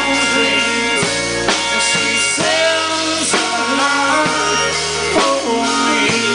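Live rock band playing a steady beat: strummed guitars and a drum kit, with a steel guitar playing gliding notes.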